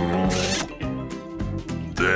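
A short smacking kiss sound effect, about a third of a second in, over background music.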